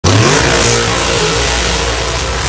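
Drag race car's engine at full throttle, very loud, its pitch climbing in the first half second.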